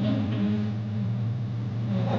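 A steady low hum with faint voices of a crowd underneath, cutting off just after the end.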